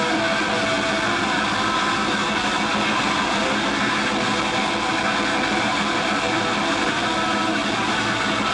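Live black/thrash metal band playing continuously at a steady loud level, electric guitar to the fore with held notes ringing through the mix.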